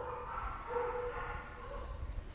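A dog whining in long, thin, steady-pitched notes that break off and start again several times.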